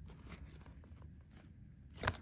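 Faint handling noise: a card swing tag and t-shirt fabric being moved in the hand, giving light rustling and a few soft clicks.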